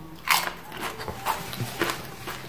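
A potato crisp bitten off with a sharp crunch about a quarter second in, then chewed with several smaller crunches.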